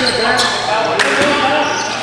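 Basketball bouncing on a gym floor during play, with one sharp hit about a second in. Players' voices echo in the large hall.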